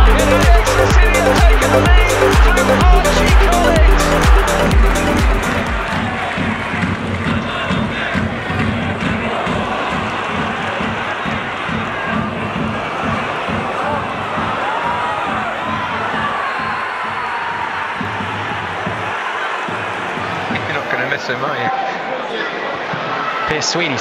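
Electronic intro music with a heavy, regular beat for about the first five seconds, then football stadium crowd noise: many voices at a steady level.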